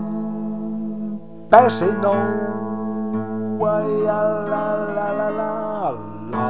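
Acoustic guitar playing slowly: a chord rings on, a fresh strum comes about a second and a half in, and the held notes drop away just before the end.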